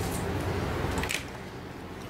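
Soft handling noise from a cloth tape measure being picked up and laid across a crocheted piece on a table, with a light rustle near the start and another about a second in.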